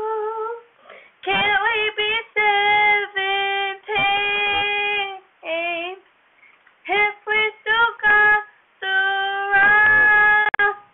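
A teenage girl singing a song without accompaniment, in phrases of held notes broken by short breaths, with a longer pause about six seconds in and a long held note near the end.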